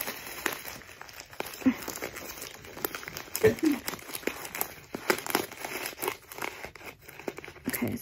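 Newspaper crinkling and rustling in many short crackles as it is crumpled and pushed bit by bit into a small paper pouch.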